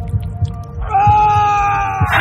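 Drama soundtrack: a low, throbbing heartbeat-like pulse, joined about a second in by a long, high, steady scream.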